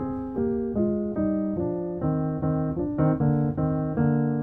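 Piano playing a descending run of two-note chords down the E-flat major scale, each dressed with a quick grace note, at about two to three chords a second, settling on a held chord near the end.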